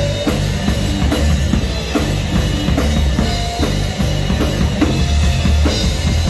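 Live rock band playing loudly: a full drum kit with bass drum and snare keeping a driving beat under amplified electric guitar.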